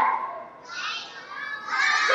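A group of young children calling out together in high voices, dying away at the start, then swelling again after about a second and growing loud near the end.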